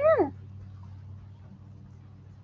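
A West Highland white terrier puppy, about a month old, gives a short high whine that falls sharply in pitch right at the start. After it only a low, steady background hum remains.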